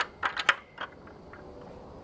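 A few light, sharp clicks and knocks in the first second, like something being handled against wood, then only faint steady background noise.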